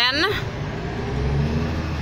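A motor vehicle's engine running nearby, a low rumble that grows louder about a second in.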